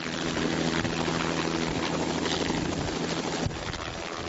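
A helicopter running close by, its rotor turning: a loud, steady noise that stops abruptly about three and a half seconds in.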